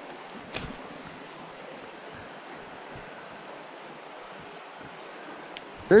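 Steady rush of a small creek's riffle flowing over stones, with one faint click about half a second in.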